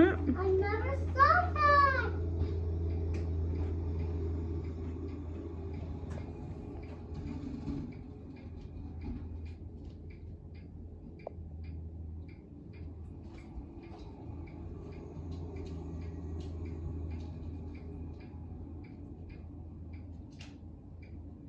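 Compact diesel utility tractor's engine running with a steady low drone while it clears snow, easing a little after about eight seconds. A child's voice briefly at the start, and faint regular ticking in the second half.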